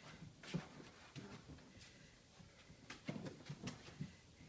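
Puppies scrambling in and around a plastic toddler tunnel: faint scattered taps and soft bumps of paws and claws on hard plastic and carpet, a little busier near the end.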